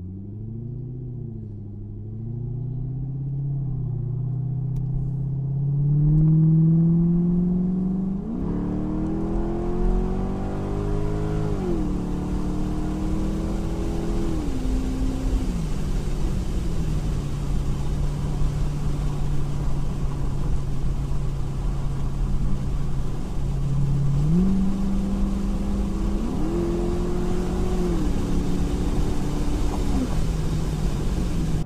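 A 2008 Chevrolet Corvette's 6.2-litre V8 pulling hard as the car accelerates onto the highway, heard from the cabin over road noise. Its revs climb and drop back twice as the automatic transmission upshifts, then hold at a steady cruise. Near the end the revs rise again under a downshift and fall back.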